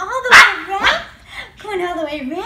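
Yorkshire terrier barking in excited greeting: two sharp barks about half a second apart, the first the louder, with high gliding vocal sounds around them.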